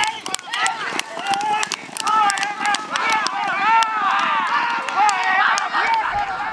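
Excited, rapid shouting during a horse race, one call after another rising and falling in pitch, over scattered sharp clicks.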